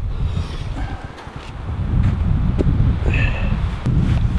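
Wind buffeting the microphone outdoors in the snow: a loud, irregular low rumble.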